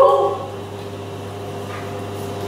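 A woman's drawn-out vocal note ends about half a second in, leaving a steady low hum.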